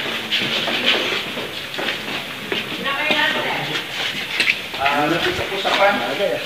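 Indistinct background chatter: people talking nearby, with no clear words, over a steady rustling haze.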